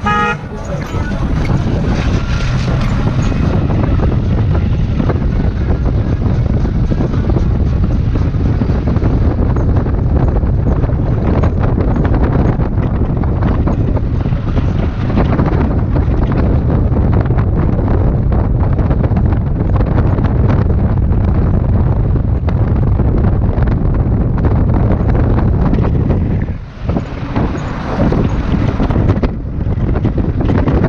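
Wind buffeting the microphone of a camera on a moving vehicle, over the steady low rumble of its engine and tyres on the road. A car horn sounds briefly at the very start, and the noise drops for a moment near the end.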